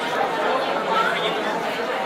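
Indistinct chatter of several voices talking over one another, with no single voice standing out.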